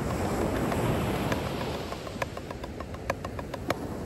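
Wooden drumsticks tapping a rubber practice pad in a quick, even run of light strokes, a paradiddle-diddle sticking (right-left-right-right-left-left, then led from the left). The strokes stand out more in the second half, over a steady low rumble of wind and surf.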